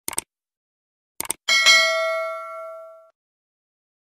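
Subscribe-button sound effect: two quick double mouse clicks, then a bright notification-bell ding that rings out for about a second and a half.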